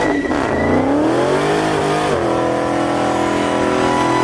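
Dodge Challenger SRT Demon's supercharged 6.2-litre V8 revving hard during a burnout, rear tyres spinning in smoke. It starts abruptly, and the engine note dips and climbs over the first two seconds, then holds steady at high revs.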